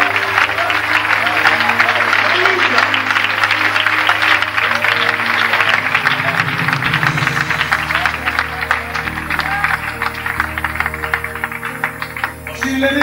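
A church congregation clapping together along with music, the claps dense and continuous over held low instrumental notes.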